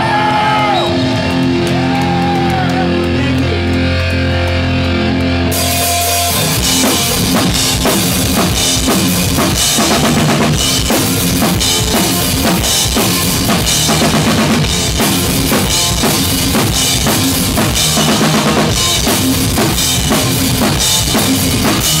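Live rock band playing the instrumental intro of a song: held guitar and bass notes for about the first six seconds, then the drum kit and guitars come in together and play on until a voice enters at the very end.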